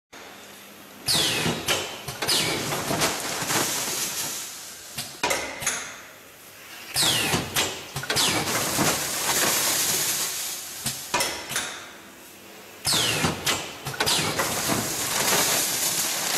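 DXD-500 automatic granule filling and packing machine running through its bagging cycle about every six seconds. Each cycle starts with a sudden clack and a short falling squeal, then several seconds of hissing rattle and clicks before a quieter pause. Three such cycles are heard.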